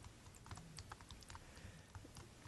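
Near silence: room tone with faint, irregular light clicks scattered through it.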